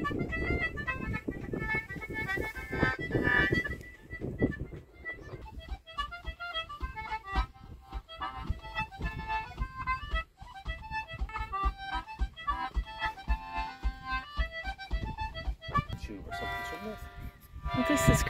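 Concertina playing a lively tune of quick, short notes.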